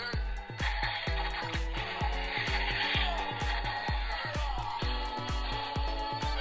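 Battery-powered Venom action figure's built-in sound module playing electronic dance music with a fast, steady beat.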